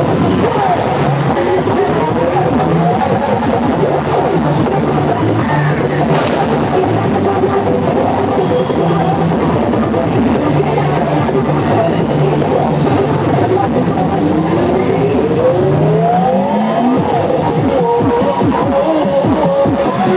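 Loud recorded routine music played over a PA, with a stepping bass line and rising sweeps that climb in pitch a few seconds in and again from about 14 to 17 seconds.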